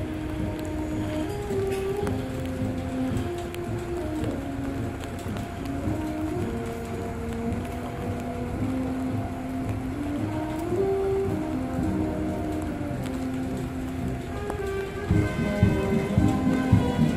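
Military band playing a slow melody of sustained notes over a steady rush of low background noise. About a second before the end the band grows louder and fuller.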